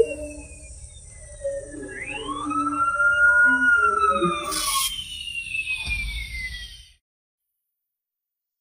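Emergency vehicle sirens wailing, their pitch sliding slowly down and up in overlapping sweeps, cutting off abruptly about seven seconds in.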